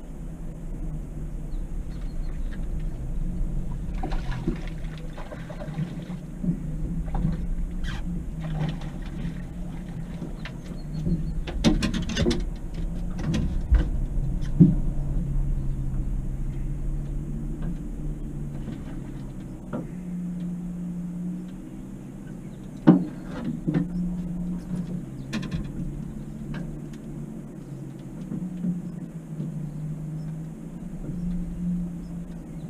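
Small outboard motor running steadily at trolling speed, a low hum throughout. Over it come scattered knocks and rattles on the aluminium boat as a bass is reeled in and landed, the sharpest about two-thirds of the way through.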